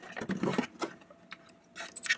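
Light clicks and scrapes of hands wiggling a wire's terminal loose from an air conditioner's run capacitor.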